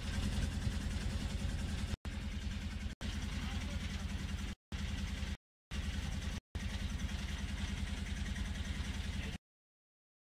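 A boat engine running steadily as heard on a phone's video recording, a low drone with a fast even pulse. Its run is cut by several brief dead-silent dropouts where playback skips ahead, and it stops abruptly near the end.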